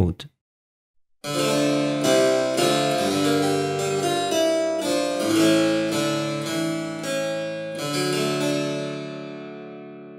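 Harpsichord playing a short four-part chordal passage, starting a little over a second in, with several chord changes. It ends on a held chord containing a major third that slowly dies away.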